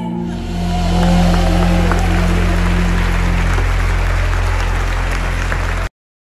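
Live worship band holding a final chord with a deep sustained bass while the congregation applauds; the sound cuts off abruptly near the end.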